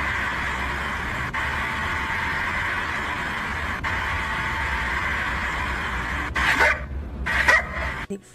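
A dog giving two short calls close together near the end, over a steady background hiss with a low hum.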